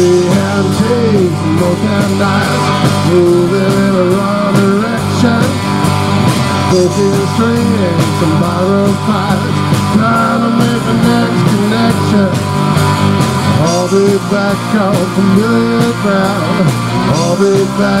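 Live rock band playing an instrumental stretch: electric guitars over a drum kit, loud and steady, with a melody line that bends up and down.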